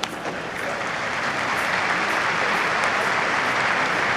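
Spectators at a high school baseball game applauding: the clapping builds over the first second or so and then holds steady. A brief sharp click comes at the very start.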